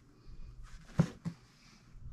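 Handling noise from a cardboard quilt-kit box held in the hands: one sharp tap about halfway through and a softer one a quarter second later.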